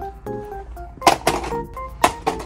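Background music, a tune of held notes, with a few sharp knocks about halfway through: a small cardboard toy box dropping into a plastic shopping cart.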